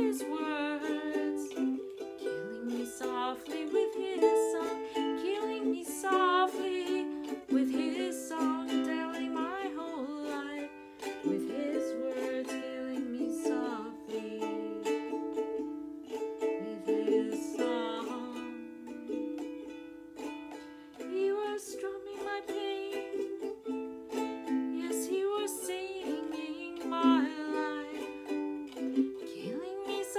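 Kala ukulele played as accompaniment to a woman singing a slow ballad, her voice gliding and wavering in pitch over the ukulele's chords.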